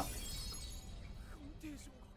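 Anime sound effect of a crystal orb shattering: a burst of breaking glass at the start, with glittering shards tinkling away over about a second.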